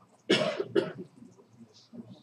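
A person coughing twice, about half a second apart.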